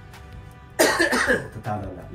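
One person coughs once, loud and sudden, about a second in, over quiet background music.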